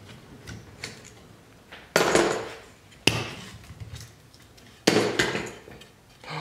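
Clamps being released from a cured bent-lamination glue-up on a wooden bending form and set down on the workbench: a few light clicks, then three loud knocks, about two seconds in, just after three seconds and near five seconds, each with a short ringing tail.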